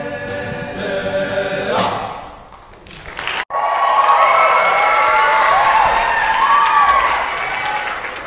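Boys' choir singing with an acoustic guitar, fading out over the first two and a half seconds. After an abrupt cut, a large choir's massed voices come in louder, with pitches gliding up and down over a noisy haze.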